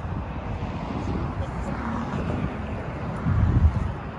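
Wind buffeting the microphone as a low, uneven rumble, with a stronger gust about three and a half seconds in, over faint background chatter.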